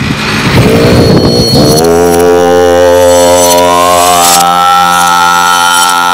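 Snowmobile engine running under way, rough at first, then settling into a steady hum that rises slightly in pitch about four seconds in.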